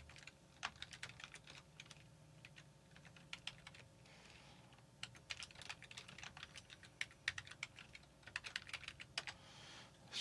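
Faint computer-keyboard typing: irregular runs of quick keystrokes.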